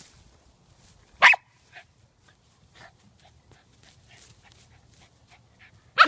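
Cairn terrier giving one sharp bark about a second in, then faint scratching as she digs into turf and soil after a mole, with another bark right at the end.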